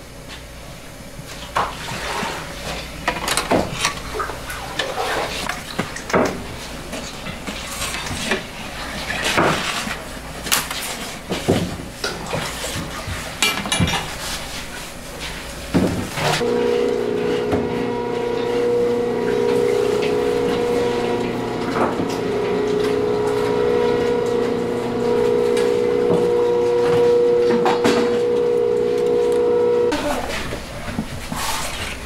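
Scattered knocks and clatter from work at a brick bread oven. About halfway through, a steady machine hum with a few fixed tones sets in and holds.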